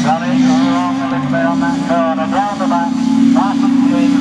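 Autograss race car engine running hard at steady high revs, one sustained engine note, with a man's voice talking over it.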